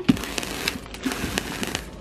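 Plastic bags rustling and crackling, handled while garbage bags are pulled out of a drawer.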